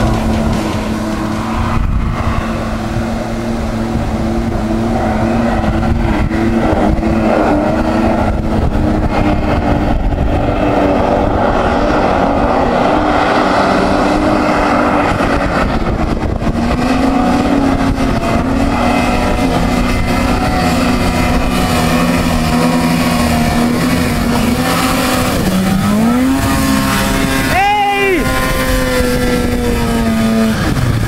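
Snowmobile engine running at high, steady revs as the sled skims across water, with a quick rev up and back down near the end.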